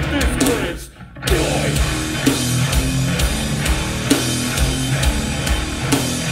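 Live beatdown hardcore band playing distorted bass and guitars, drums and a shouted vocal. The band stops dead for a moment about a second in, then crashes back in on a steady drumbeat.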